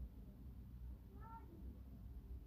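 Faint low background hum, with one short pitched call rising slightly in pitch a little over a second in.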